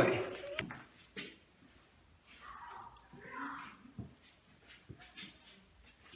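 English cocker spaniel puppy making two short, soft vocal sounds about two and three seconds in, with a few light clicks between.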